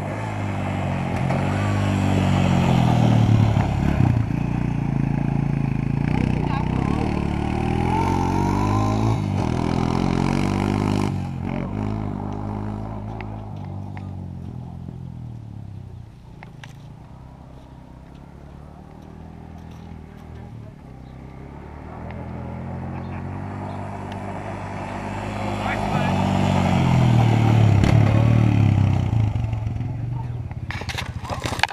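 Quad bike engine revving up and down as it is ridden about, loud at first, fading to a quieter stretch midway as it moves off, then building loud again near the end as it comes back close.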